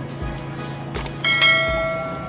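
A bell-chime sound effect, the notification ding of an animated subscribe button, rings out about a second in and fades slowly, just after a short click, over soft background music.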